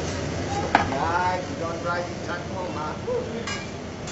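Restaurant dining-room ambience: indistinct voices over a steady background hum, with a sharp clink about three-quarters of a second in and another about three and a half seconds in.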